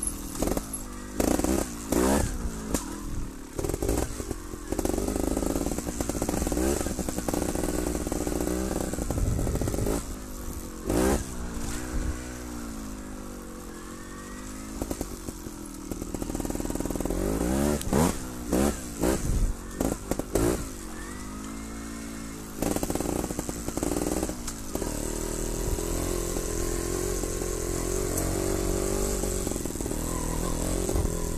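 Trials motorcycle engine being ridden along a trail: repeated short blips of throttle, the revs sweeping up and falling back. There is a quieter spell at lower revs about midway through.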